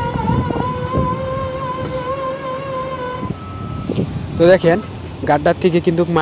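SANY SR235 rotary piling rig hoisting its Kelly bar and soil-filled drilling bucket out of the bored pile hole. Its engine and winch make a steady whine that stops about three seconds in. A voice follows near the end and is the loudest sound.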